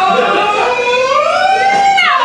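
Several voices holding a long, wordless, siren-like vocal sound, their pitches overlapping and gliding up and down, rising together near the end and then falling away.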